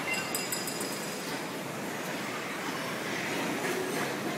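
Steady mechanical running noise of factory machinery around a large stator coil winding machine while copper coils are handled. A short run of faint high ticks and thin tones falls in the first second.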